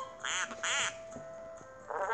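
Two short cartoon duck quacks from a children's story app, one right after the other in the first second, over a single held note of background music.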